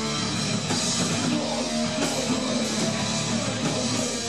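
A hardcore punk band playing live: electric guitars through amplifiers over a drum kit, a dense, unbroken wall of sound.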